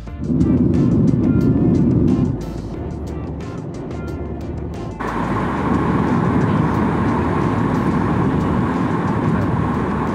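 Jet airliner cabin noise heard from a window seat over the wing: a steady rush of engine and airflow noise, loudest and deepest in the first two seconds. About five seconds in it changes abruptly to a steadier, brighter hiss with a hum running through it.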